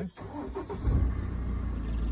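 Open safari game-drive vehicle's engine starting about a second in, then running with a steady low rumble as the vehicle gets ready to leave.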